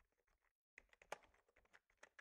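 Faint, rapid keystrokes on a computer keyboard as a command is typed, with a brief pause about half a second in.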